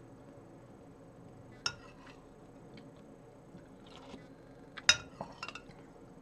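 A spoon clinking against a plate of oatmeal while eating: one sharp clink about a second and a half in, then the loudest clink near five seconds, followed by a few lighter taps.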